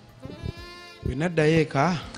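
A brief, faint drawn-out vocal sound, then about a second in a man's voice speaking or exclaiming without clear words.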